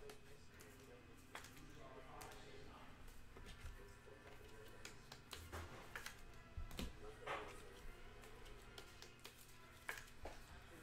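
Faint handling of trading cards and plastic card holders on a table: scattered soft clicks and rustles over a low steady hum.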